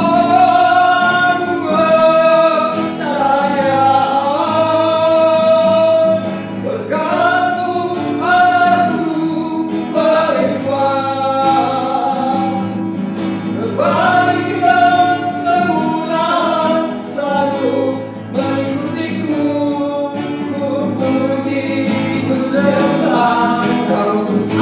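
A woman and a man singing a worship song together, accompanied by an acoustic guitar.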